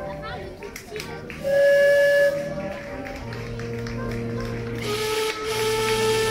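A boat's horn gives a loud, steady blast of just under a second, starting and stopping abruptly about a second and a half in; steady lower tones with a hiss follow near the end, over crowd voices and music.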